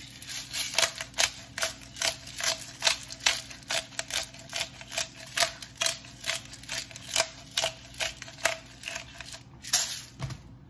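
Hand-twisted pepper grinder grinding over a salad: a steady run of sharp clicks, about two or three a second.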